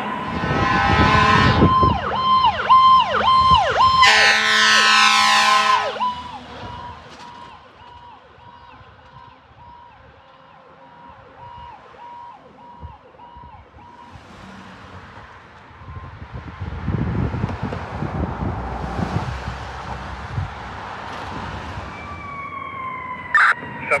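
Fire apparatus electronic siren, loud at first: a steady horn blast, then quick repeating yelps and a fast rising sweep, fading away after about six seconds as the truck moves off. Traffic rumbles past in the middle, and near the end another siren comes in with falling wails as the next apparatus approaches.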